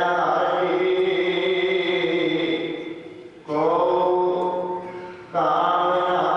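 A man chanting a line in long, drawn-out notes into a microphone, pausing twice for breath, the second break shortly before the end.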